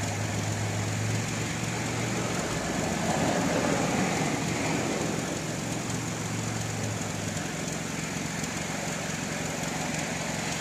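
Car engine idling steadily at about 680 rpm, heard from inside the cabin as a low, even hum.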